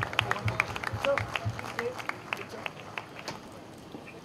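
An audience applauding, the clapping thinning out and fading away over the few seconds.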